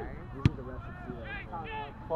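Distant shouting voices of players and sideline spectators at a rugby match, with one sharp thump about half a second in.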